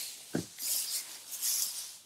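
Cut hay rustling as a windrow swath is turned over and handfuls are grabbed from underneath, a soft high rustle that swells and fades, with one brief dull thud shortly after the start.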